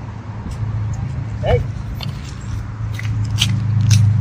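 Footsteps on a paved path, a few light scuffs, over a steady low hum that grows louder toward the end. A brief vocal sound about a second and a half in.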